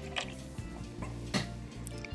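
Soft background music with three small, sharp metallic clicks from needle-nose pliers working a hook on a cuckoo clock's brass weight chain.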